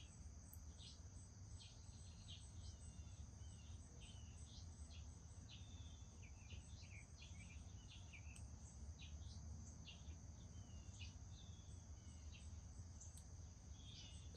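Faint outdoor ambience: a steady high-pitched insect trill, with many short bird chirps and brief whistled notes scattered throughout, over a low steady rumble.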